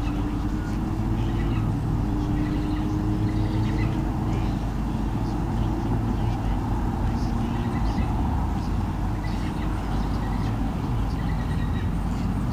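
A steady low mechanical drone with a hum that slowly rises in pitch, and faint short high chirps over it.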